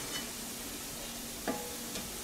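Tomato and onion mixture sizzling quietly and steadily in a stainless steel pan as a spatula stirs it, with one short knock of the spatula against the pan about one and a half seconds in.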